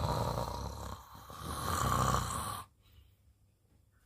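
A person snoring: two drawn-out, rattling snores, the second starting about a second and a half in and stopping a little past halfway.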